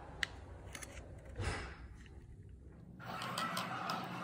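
Small handling sounds of an adhesive mounting strip and a plastic clock movement: a sharp click just after the start and a brief rustle of the strip's paper liner about a second and a half in. From about three seconds on there is a steadier background of handling and room noise.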